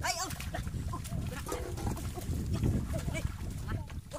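Feet and a woven bamboo basket trap splashing and sloshing in shallow muddy paddy water, with wind rumbling on the microphone. Short high-pitched vocal calls are heard near the start and again near the end.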